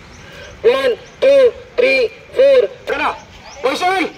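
Loud shouted counting: about six short rhythmic calls, one every half-second or so, each rising and then falling in pitch, as exercise repetitions are counted aloud.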